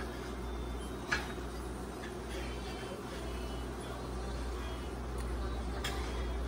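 Steady low hum of kitchen background noise, with a few sharp clinks of a serving utensil against a metal tray of crab boil: one right at the start, the clearest about a second in, another near the end.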